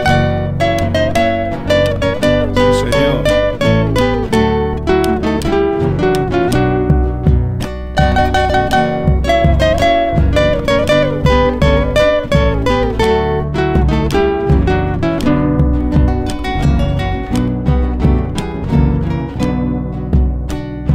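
Instrumental interlude of an Argentine zamba, with no singing: an acoustic guitar plays a plucked melody over a steady low accompaniment.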